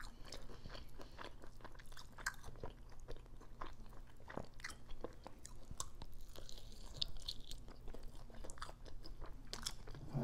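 Close-miked chewing and biting of chicken wings: a run of short, irregular mouth clicks and smacks as the meat is bitten off the bone and chewed.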